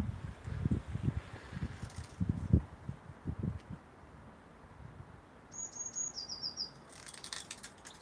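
A small bird chirps a quick run of high notes a little past halfway: about three, then four slightly lower. Before it come soft low bumps.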